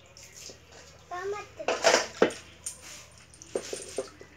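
Water poured from a plastic dipper splashing over a dog during its bath, one loud splash about two seconds in, followed by a sharp knock and a few small clicks. A short high-pitched voice is heard just before the splash.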